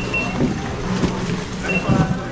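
Checkout barcode scanner giving short high beeps, one near the start and one near the end, as goods are scanned. Beneath it runs a steady low hum, with a couple of knocks of goods being set down.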